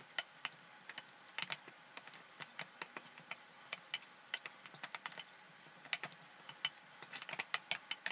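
Wooden spatula stirring crumbly flour as it roasts in butter in a stainless steel pot: faint, irregular scrapes and clicks of the spatula against the metal, the flour kept constantly moving so it does not burn.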